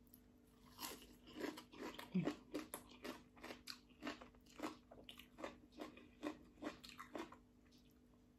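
Close-up chewing of a mouthful of shredded green papaya salad with fresh raw chickweed: crisp crunches about three a second, starting about a second in and stopping shortly before the end.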